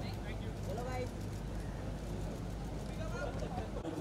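Steady low engine hum, with a few faint distant voices calling over it; the hum cuts off suddenly near the end.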